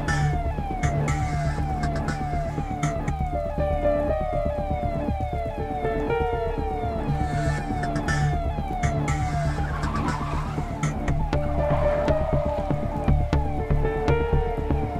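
Police siren sounding in quick repeated falling sweeps over a film score with a low, pulsing bass line.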